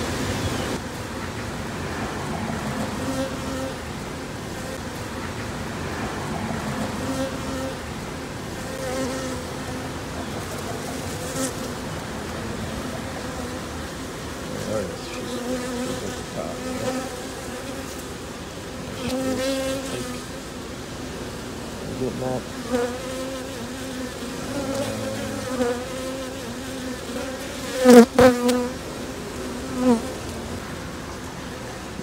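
Honey bees buzzing close to the microphone around a queen clip held over an open hive: a steady hum that swells now and then. A couple of loud knocks or bumps come about two seconds before the end.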